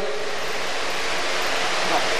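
Steady, even rushing noise with no pitch or rhythm, the constant background of the hall's sound pickup, heard in a pause between sentences of the speech.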